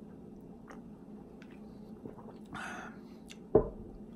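A person sipping an iced drink from a glass mug: faint small clicks, a breathy exhale a little past the middle, then a single thump about three and a half seconds in as the mug is set down.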